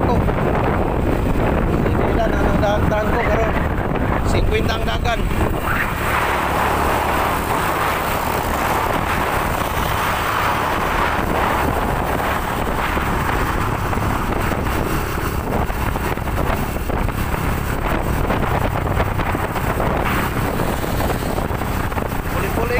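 Wind rushing over the microphone with the steady low rumble of the moving vehicle that carries it.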